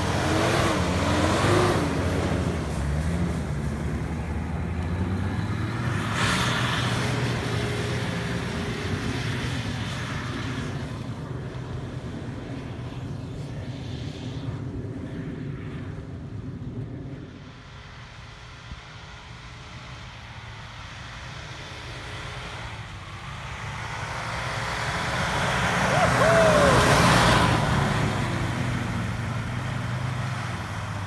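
Nissan Patrol's RD28 2.8-litre straight-six diesel engine running and revving as the SUV drifts through snow. It fades as the vehicle moves far off, then grows loud again near the end as it slides past close by.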